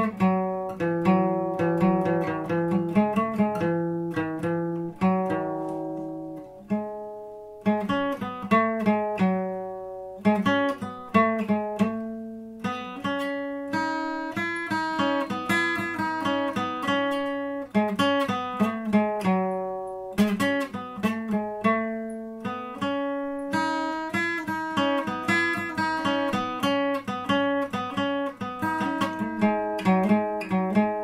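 Solo acoustic guitar played fingerstyle: a slow melody of single plucked notes over low bass notes, each note ringing and fading, in phrases with short pauses between them.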